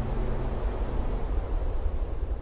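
Steady, wind-like noise with a low rumble: a whooshing scene-transition sound effect.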